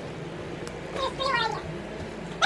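A toddler's brief high-pitched vocal sound, falling in pitch over about half a second, about a second in.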